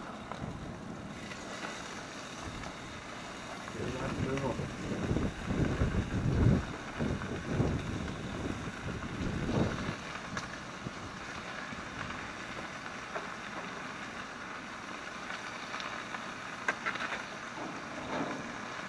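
Wind buffeting the microphone in irregular low gusts, strongest for several seconds in the middle, over a steady hiss.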